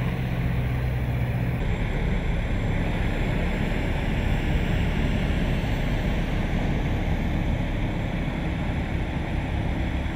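Heavy diesel vehicles idling. A steady engine hum changes abruptly at a cut about one and a half seconds in, becoming a rougher low rumble that holds even to the end.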